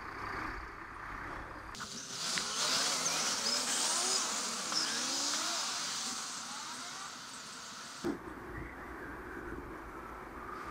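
Road traffic at a junction: engines rising in pitch as vehicles pull away, under a loud hiss that starts suddenly about two seconds in and stops suddenly about eight seconds in.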